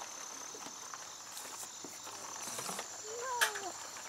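An insect trilling steadily on one high, thin note, faint over outdoor background noise. A brief distant voice sounds near the end.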